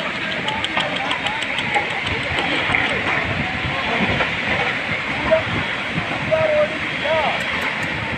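Landslide: a steady rushing hiss of soil and rock sliding down a hillside, with faint distant shouts of onlookers.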